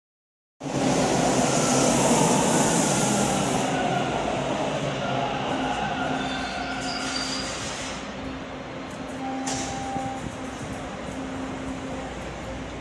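Toronto subway Bombardier T1 train pulling into a station platform: a loud rumble with a high hiss that is strongest in the first few seconds and then gradually fades as the train slows, with a few steady whining tones from the wheels and motors held over it.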